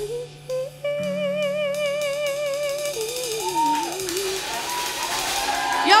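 Live band with electric guitar and drums playing the close of a song: a long held note with vibrato, then a short wavering melodic phrase. A cymbal wash swells near the end.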